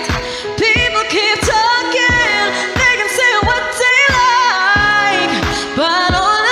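A woman singing a pop song into a microphone, holding and bending long notes, over instrumental accompaniment with a steady kick drum beat about every 0.6 seconds.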